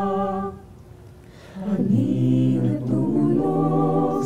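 Mixed choir of men's and women's voices singing a cappella. A held chord ends about half a second in; after a short pause, the voices come back in on a new, lower phrase.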